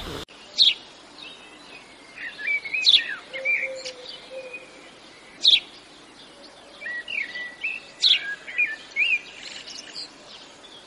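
Small birds chirping and calling: a few sharp, loud chirps a couple of seconds apart, with softer warbling, gliding notes between them.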